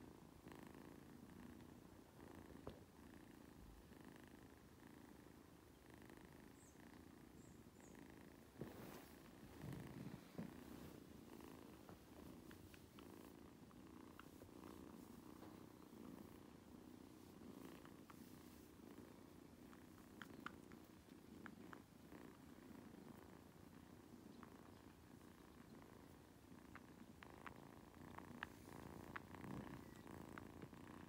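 Soft, continuous purring from a mother cat and her nursing orange tabby kittens, with scattered faint clicks that come more often near the end.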